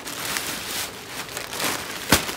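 Plastic bubble-wrap packaging crinkling and rustling in the hands as a parcel is handled and opened, an irregular crackle.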